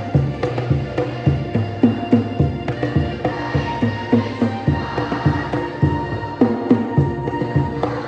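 Congas slapped by hand in a quick, steady rhythm, with held melody notes joining about three seconds in.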